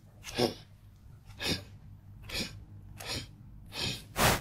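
A man's short, sharp nasal breaths, five in a row, about one a second, over a faint steady low hum.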